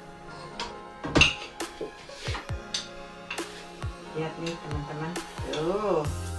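Background music with metal utensils clinking against a cooking pot and plates: a string of short sharp clinks, the loudest about a second in.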